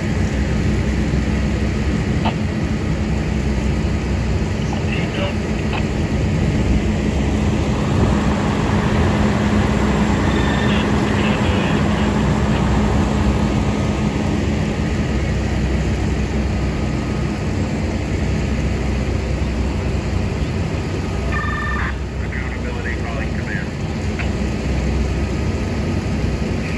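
Fire truck's diesel engine running steadily while it drives its pump, a constant drone with a steady low hum. Faint voices come through now and then.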